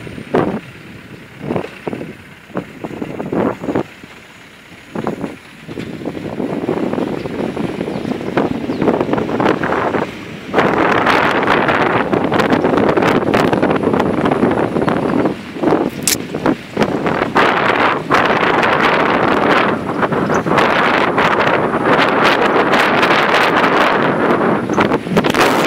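Wind buffeting the microphone of a phone held out from a moving vehicle, over the rumble of the ride. The gusts come and go at first, then from about ten seconds in the wind noise is loud and steady.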